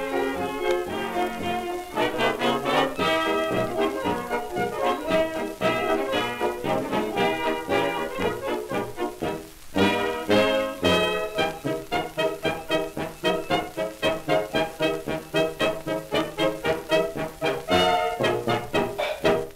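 A 1920s dance orchestra playing an instrumental fox trot passage with brass, from a 78 rpm record transfer. A brief drop about ten seconds in, then a strongly accented steady beat.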